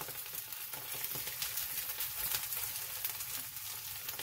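Corned beef hash sizzling steadily with fine crackles as it fries on high heat in a nonstick skillet, a plastic spoon pressing and stirring it.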